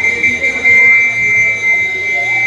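A whistle blown in one long, high blast by a Midnight Robber masquerader, warbling at first and then held steady. It is the Robber's traditional whistle announcing his entrance.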